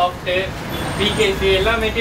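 Mostly speech: a man talking, over a steady low background rumble.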